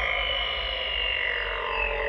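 Progressive house track intro: layered synthesizer tones sliding downward in pitch over a steady low bass drone, with no beat yet.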